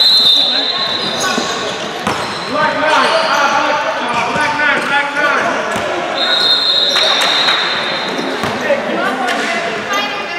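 A referee's whistle blown twice: a steady high tone for just under a second at the start, and a longer one of about two seconds about six seconds in. Voices and basketballs bouncing on the gym floor run underneath.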